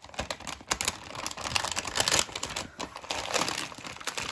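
Crinkling of a bag of foil-wrapped chocolates as hands rummage inside it: a dense run of irregular crackles throughout.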